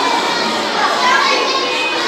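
Many children talking at once, a steady babble of young voices.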